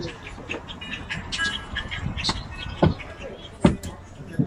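Footsteps climbing into a motorhome through its side door: two heavy thumps on the step and floor, under a second apart near the end, over background voices and music.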